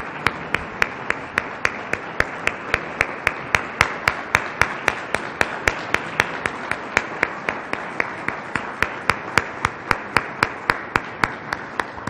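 Audience applauding, with one person's hand claps close to a microphone standing out above the crowd, sharp and evenly paced at about four claps a second.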